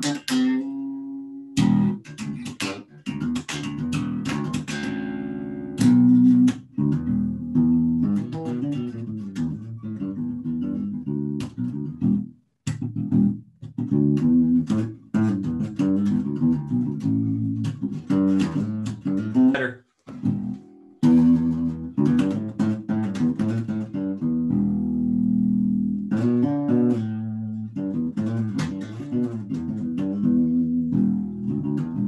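Solo Fender electric bass playing a funk line of short plucked notes, with two brief stops, about twelve and twenty seconds in.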